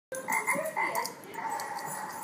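An animal-sounds toy ball playing a recorded frog croak through its small speaker: a quick run of short croaks, then a longer held note.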